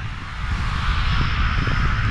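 Wind buffeting a small action-camera microphone: a steady, rumbling rush with irregular low gusts.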